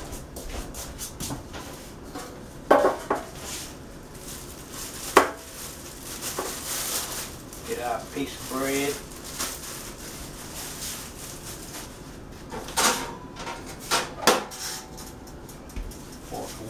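Dishes and kitchen utensils clattering on a countertop as food is prepared: a handful of separate sharp knocks and clinks, the sharpest about five seconds in and a few more close together near the end.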